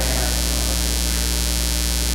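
Steady electrical mains hum with a low buzz and an even hiss, unchanging throughout.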